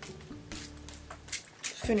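A few short hissing spritzes from a hand-held trigger spray bottle spraying a vinegar rinse onto wet hair, over soft background music.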